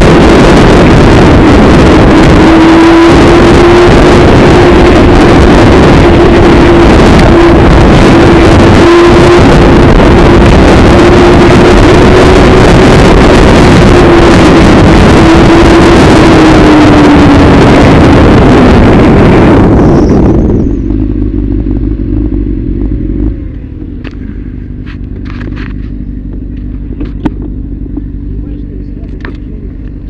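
Motorcycle riding in traffic: loud wind rush on the camera's microphone over a steady engine note, which drops in pitch as the bike slows. About twenty seconds in, the wind noise cuts out and the engine idles much more quietly, with a few clicks.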